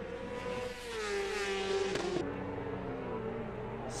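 Superbike racing motorcycle at high revs going past, its engine note dropping in pitch as it passes. Just past halfway the loud engine sound cuts off suddenly, leaving a fainter, lower engine drone.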